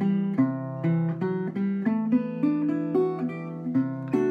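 Metal-bodied resonator guitar playing a D-over-C slash chord, its notes picked one after another over a sustained low C in the bass.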